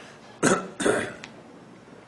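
A man clearing his throat with two short coughs in quick succession, about half a second in.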